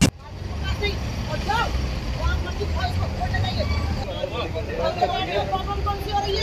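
Steady low rumble of road vehicles idling and passing, with indistinct voices of people talking at a distance over it. A brief loud burst comes at the very start.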